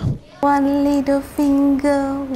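A high-pitched voice singing long, level held notes with short breaks between them, starting about half a second in.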